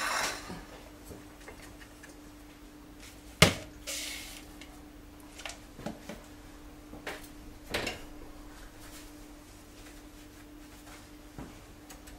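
Kitchen utensils and cookware being handled while a biscuit base is pressed into a cake tin. There is one sharp knock about three and a half seconds in, then a brief scrape and a few light clicks, over a steady low hum.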